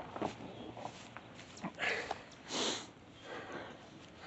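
A man's faint breathing and sniffing, a few short breaths about half a second to a second apart.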